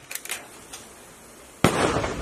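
Rifle gunfire: a few fainter sharp cracks in the first half-second, then one loud shot about one and a half seconds in that rings on afterwards.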